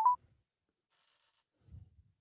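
A short electronic two-note beep, the second note a little higher, right at the start, followed by near silence and a faint low thud near the end.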